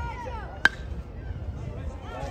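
A metal youth baseball bat striking a pitched ball: one sharp ping with a brief ring, about two-thirds of a second in.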